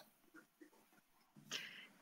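Near silence on a video call, with a short faint breath-like hiss about one and a half seconds in, just before the next speaker begins.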